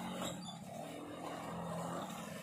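A motorcycle engine running steadily as it rides past, a low even hum that fades near the end.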